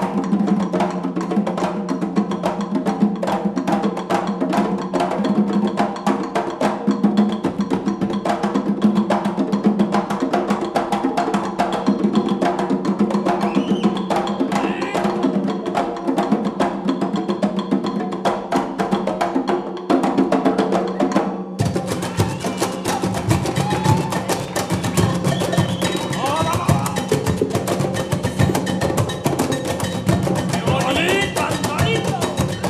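Afro-Peruvian festejo rhythm played on cajones and congas: a dense, fast, steady pattern of hand strokes from the whole ensemble. About two-thirds of the way through the sound changes abruptly to a fuller, louder-bottomed mix of the same drumming.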